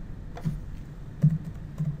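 A few soft keystrokes on a computer keyboard as a name is typed into a form field.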